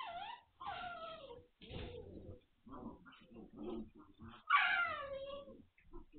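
Magyar Vizsla puppies whining and yelping while they play-fight. There are several calls that slide down in pitch: one at the start, one about a second in and the loudest about four and a half seconds in, with lower, rougher puppy noises between them.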